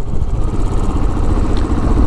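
Royal Enfield motorcycle's single-cylinder engine running steadily while ridden along the road, with wind rushing over the microphone.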